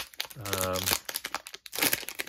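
Plastic wrapper of an Upper Deck hockey card pack crinkling as it is handled, with a louder burst of crinkling near the end as it is torn open.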